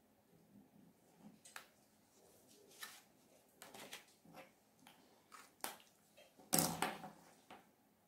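Faint scattered rustles and light taps of hands handling a paper pattern and layered cotton fabric on a cutting mat. Near the end there is a louder rustle as the fabric layers are picked up.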